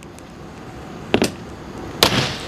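Rescue tomahawk glass tool striking a laminated windshield to punch a starting hole: one sharp knock about a second in, then a second, louder strike right at the end.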